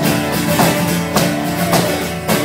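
Solo acoustic guitar strummed in a steady country rhythm, about two strong strokes a second, with no singing.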